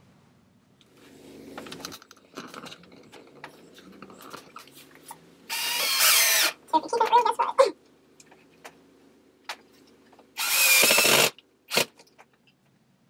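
Cordless drill running in two bursts of about a second each, one about five and a half seconds in and one near the end, against the wooden chair frame. Short stuttering pulses follow the first burst, and scattered clicks and knocks from handling the frame fall in between.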